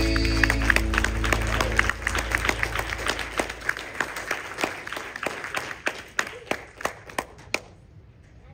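A church congregation applauding as the final held chord of a gospel song's accompaniment fades away. The clapping thins out and stops shortly before the end.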